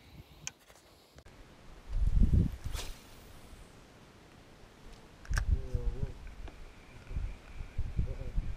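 Irregular low rumbles of wind buffeting and camera handling on the microphone, loudest about two seconds in and again after five seconds, with a few faint clicks.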